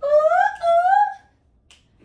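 A high-pitched voice giving two drawn-out rising calls, the second one longer. A faint click follows near the end.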